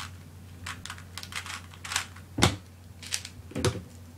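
Factory-condition plastic 3x3 speedcube being turned fast by hand: quick, irregular clicking and clacking of its layers, with two louder knocks in the second half as cubes are handled against the desk.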